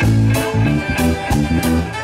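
Live reggae band playing an instrumental passage, with no vocals: guitar chords and bass notes over a steady drum beat.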